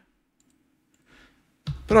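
A few faint clicks of a computer mouse and keyboard, with a man's voice starting near the end.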